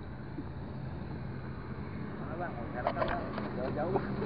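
A steady low hum from a running motor, with indistinct voices and a few sharp clicks in the second half.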